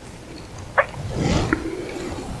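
Vivax-Metrotech VM-850 receiver's telescoping antenna array being slid shorter: a scraping, rushing slide of plastic and metal with a sharp click a little before the middle and another about three quarters of the way through.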